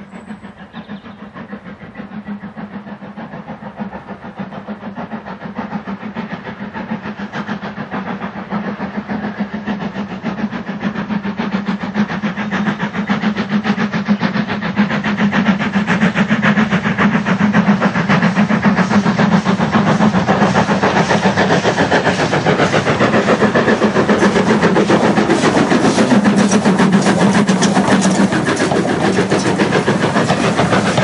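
Steam locomotive hauling a passenger train, its exhaust beating hard and fast, growing steadily louder as it approaches and loudest as it nears in the second half.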